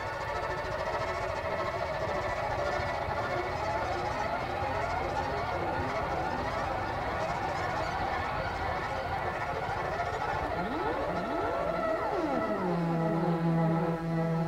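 Live jazz-rock fusion band playing a sustained, textural passage: layered held tones crossed by many sliding pitch glides, several sweeping downward near the end and settling into a steady low held note.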